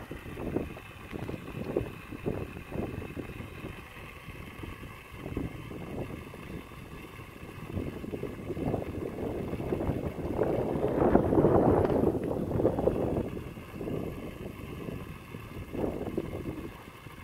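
Wind buffeting the microphone in irregular gusts, with a louder rushing stretch about ten to thirteen seconds in.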